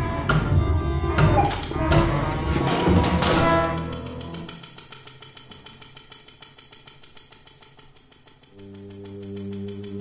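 Contemporary chamber ensemble with live electronics performing. The first few seconds are loud and dense, with sharp percussion strikes. The sound then thins to a rapid, even pulsing, and a sustained low note enters near the end.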